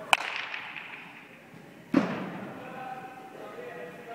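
A baseball bat hitting a pitched ball: one sharp crack just after the start, echoing in a large indoor hall. About two seconds later comes a duller, lower thud.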